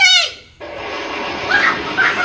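A child's high-pitched villain's cackle, the last call of a run of laughs, cutting off about half a second in. It is followed by a steady rushing hiss with children's voices faintly over it.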